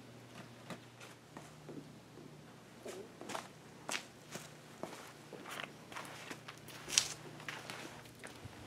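Scattered footsteps and light knocks and rustles of handling, with a sharper tap near the end, over a steady low hum.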